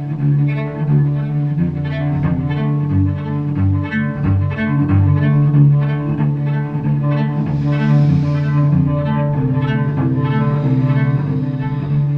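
Solo carbon-fibre cello bowed in a rhythmic pattern of short, repeated strokes over a low note held throughout, the melody moving above it.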